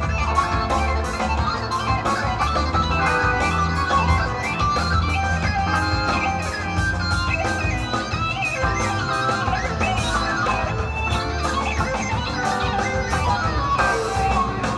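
Live rock band playing an instrumental passage, an electric guitar leading with quick runs and bent notes over bass and drums.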